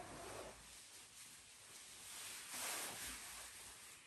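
Faint rustling of clothing and fabric as a person moves about, swelling softly at the start and again about two and a half seconds in.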